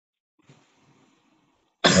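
Near silence, then a man's single cough close to the microphone near the end.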